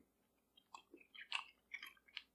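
Faint, soft chewing of a bite of pemmican, a soft bar of dried beef and beef tallow: a few small, wet mouth sounds in the second half.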